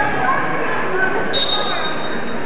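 Referee's whistle blown once, about a second and a half in: a single shrill steady tone lasting under a second as the wrestling bout gets under way. Spectators' voices and shouts are heard throughout.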